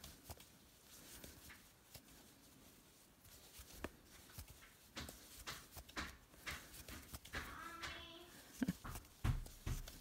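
Soft, quiet clicks and rustles of a crochet hook and yarn being worked in single crochet stitches. About seven seconds in, a child's voice calls faintly from further away.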